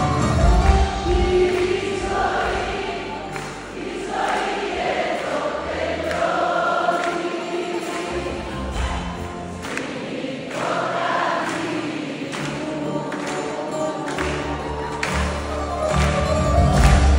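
Live concert music: long, held sung notes over a band accompaniment, with the bass dropping out in the middle and coming back near the end.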